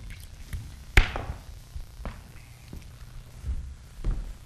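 Torch handles knocking against buckets as the torches are put out: one sharp knock about a second in, then a few lighter clunks over a steady low hum.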